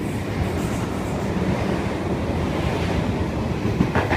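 Tangara double-deck electric suburban train running past along the platform: a steady rumble of wheels on rails.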